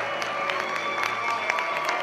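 Audience applauding, many scattered claps, over steady background music.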